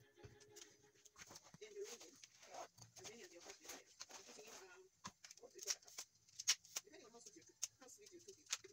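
Sharp clicks and knocks from a collapsible light stand being handled, loudest in the second half, over faint background speech.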